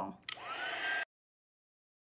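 Embossing heat tool switched on: its fan motor spins up with a rising whine that levels off over a steady rush of air as it blows hot air onto copper embossing powder. The sound cuts off suddenly about a second in, leaving dead silence.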